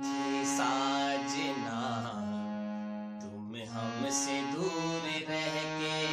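Harmonium playing a slow melody in long held notes, with a man's voice softly singing the tune along with it.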